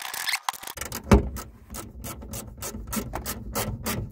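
Small clicks and scraping as screws are worked by hand into a plastic car speaker bracket, a few clicks a second, with one sharper knock about a second in.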